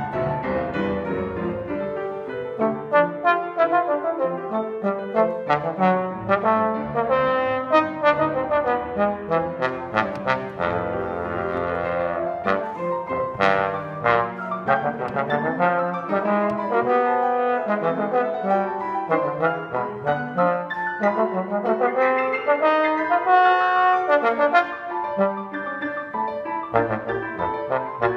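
Trombone and grand piano playing a classical duo piece together: piano notes with sharp attacks under the trombone's sustained melodic line.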